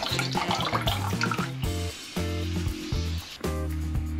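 Background music, with water splashing and dripping in a sink over the first second and a half as a film reel is lifted out of a developing tank.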